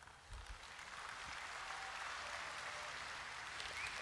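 Audience applauding, rising about a third of a second in and then holding steady; faint beside the speech.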